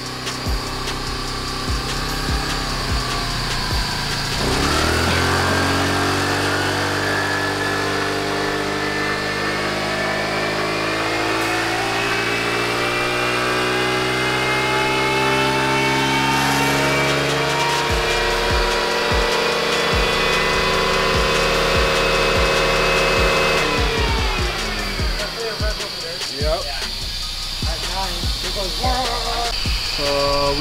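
Honda Navi's 109 cc single-cylinder four-stroke engine making a full-throttle pull on a roller dynamometer. It rolls at low revs for about four seconds, then opens up, and its pitch climbs slowly and steadily for about twenty seconds. The throttle then closes and the engine winds down.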